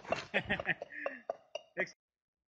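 A row of dark stone blocks standing on end toppling one after another like dominoes, each one striking the next with a sharp clack, about four to five clacks a second, with a person's voice among them.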